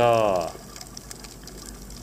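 A man's voice drawing out a single word, then about a second and a half of faint, lightly crackling background noise.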